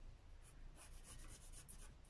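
Faint scratching of a pencil drawing a line on paper.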